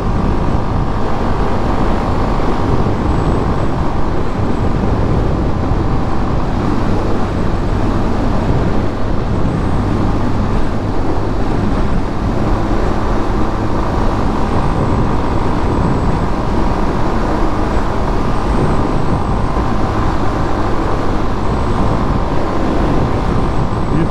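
Yamaha Fazer 250's single-cylinder engine running steadily at highway cruising speed, under a loud, steady rush of wind on the rider's microphone.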